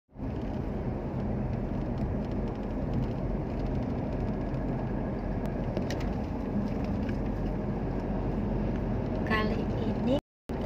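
Steady road and engine noise inside a car's cabin as it cruises along an asphalt road.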